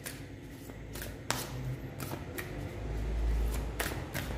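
A deck of tarot cards being shuffled by hand: a run of soft, irregular card clicks and slaps, with a low rumble swelling near the end.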